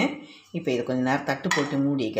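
A stainless steel lid clinking once against the dishes about one and a half seconds in, over a woman talking.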